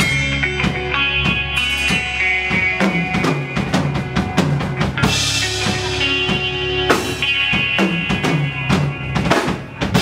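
Live rock band playing loudly: a drum kit with bass drum and snare hits under sustained notes from an amplified double-neck electric guitar.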